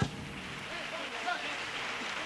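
Theatre audience applauding and cheering, with clapping and scattered shouts starting right as a male choir and guitars stop on a final chord.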